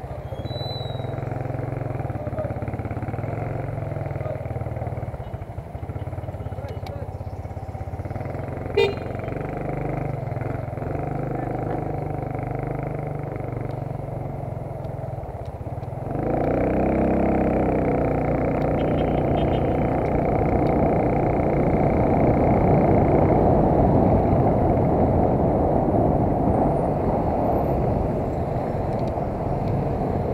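Motorcycle engine running in moving street traffic, with a steady low rumble. A brief sharp sound comes a little before a third of the way in, and from about halfway the sound grows louder and noisier.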